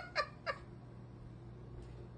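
A person's laugh trailing off in three short, fading bursts within the first half-second, followed by quiet room tone with a faint steady hum.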